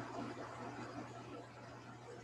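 Vitamix blender running, puréeing roasted tomatoes, olive oil and garlic into soup; heard only faintly, as a low even whirring noise that eases off slightly.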